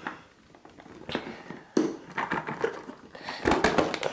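Hard plastic clamshell of an LOL Pearl Surprise toy being prised open by hand: scattered plastic clicks and knocks with handling rustle, and a quick run of clicks near the end as the shell comes apart.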